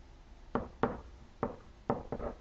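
A pen striking and stroking the hard surface of an interactive whiteboard while a word is handwritten: four short, sharp taps at uneven intervals.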